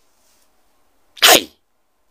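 A single short, sharp breathy burst from a man, a little past a second in, with silence around it.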